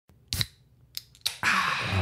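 A pop sound effect: three short sharp pops, then a short steady hiss that runs into the first words.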